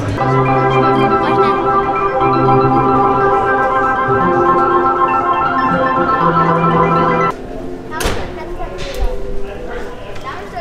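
Sustained, organ-like synthesizer chords over a bass note that shifts between a few pitches. The sound stops abruptly about seven seconds in, followed by a sharp click and quieter room sound.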